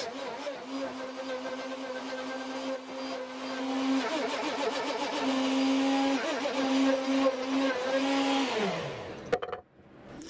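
Wood router in a shop-built mortising machine running steadily while plunging mortises into a board, its whine wavering briefly where the bit takes load. Near the end it switches off and winds down with a falling pitch.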